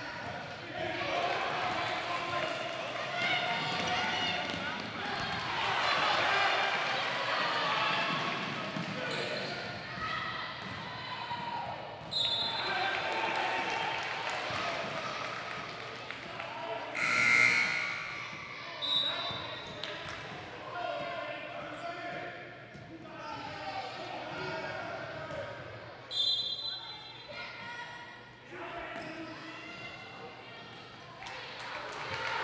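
Youth basketball game on a hardwood gym court: the ball bouncing and sneakers squeaking among spectators' voices, with a hall echo. A sudden loud burst a little past halfway is the loudest sound.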